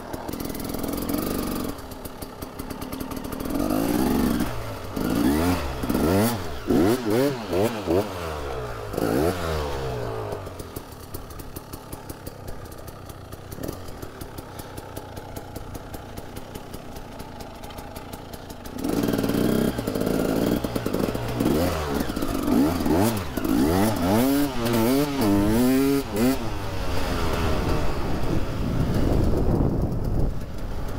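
KTM EXC 300's two-stroke single-cylinder engine revving up and down over and over as the enduro bike is ridden, easing back to a quieter steady run for several seconds in the middle before revving hard again.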